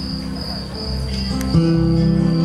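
Amplified guitar playing a quiet passage of held, ringing notes, with a louder note struck about one and a half seconds in. A steady high-pitched tone runs behind it.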